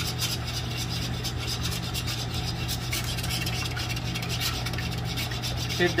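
A fork beating eggs and buttermilk in a shallow baking pan, its tines scraping and rubbing the pan bottom in quick, steady strokes.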